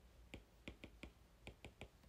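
Faint, irregular ticks of a stylus tip tapping on a tablet screen during handwriting, about four a second.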